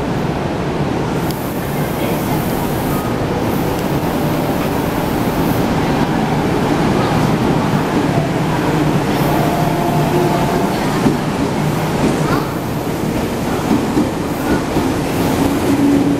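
Meitetsu 1000/1200 series limited-express electric train pulling out of the station and gathering speed along the platform, its running noise growing slowly louder. Faint steady tones from the train come in during the second half as it speeds up.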